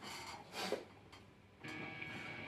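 Faint hiss and hum from an electric guitar amplifier in a pause in the playing, with one brief faint sound about half a second in. The hiss and hum step up about a second and a half in as the amp is switched over to overdrive.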